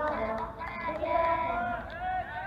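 Several young players' voices shouting overlapping, drawn-out, high-pitched calls across a baseball field.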